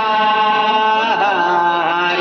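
Music with chant-like singing: one voice holding long notes that bend in pitch, over steady sustained tones.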